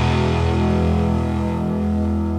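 Rock band's last chord ringing out: electric guitars and bass held on one chord, slowly fading.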